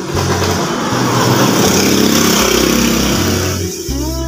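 A motor vehicle passing by, its noise swelling early on, holding, and fading away shortly before the end.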